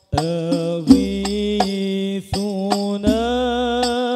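Male voice singing a sholawat melody in long held, ornamented notes through a microphone and PA, coming in just after a short break. The singing is cut across by several sharp strikes of banjari frame drums.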